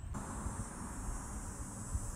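Outdoor ambience with insects, likely crickets, keeping up a steady high-pitched trill over a low rumble; it comes in abruptly just after the start.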